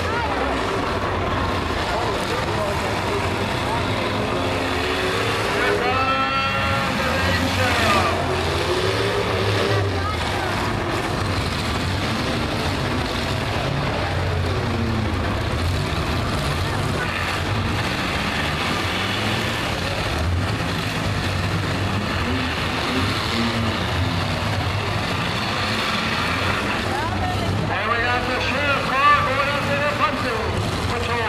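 Engines of several demolition derby cars running loudly at once in the arena, a continuous low mechanical din. People's voices rise over it about six seconds in and again near the end.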